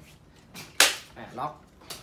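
Folding stock of an MB08 airsoft sniper rifle swung shut and latching locked with one loud, sharp click, followed by a smaller click near the end.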